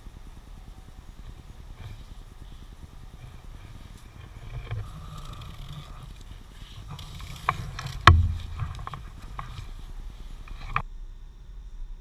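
Handling noise as the sky-hook cord of a hammock bug net is cinched tight: nylon fabric and cord rustling over a low steady rumble, with two sharp clicks about seven and a half and eight seconds in, the second the loudest and with a thump. The sound drops away about a second before the end.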